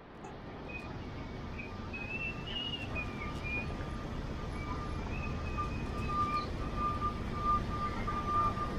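City street ambience, mostly a steady hum of traffic, fading in over the first second. A faint thin steady tone and some wavering higher tones sit above it.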